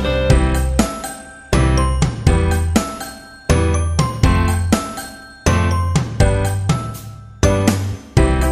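Background music: a light children's tune of chiming, bell-like notes, with a low note struck about every two seconds.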